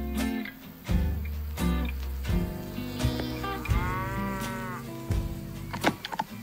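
A cow mooing once, a long call that rises and then falls, about three seconds in, over light background music.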